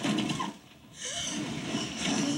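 A heavy thump on the tour car's glass roof right at the start, as the goat's leg lands on it, followed about a second in by a steady hiss of rain on the car.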